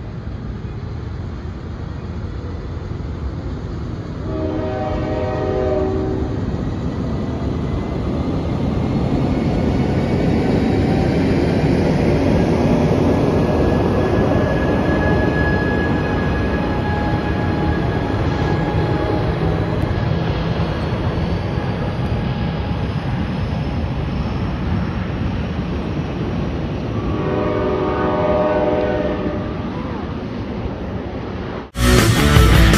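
Amtrak bilevel passenger train rolling past close by, with a heavy rumble of wheels on the rails that is loudest as its Caltrans diesel locomotive goes by about halfway through. A multi-note train horn sounds for about two seconds near the start and again near the end.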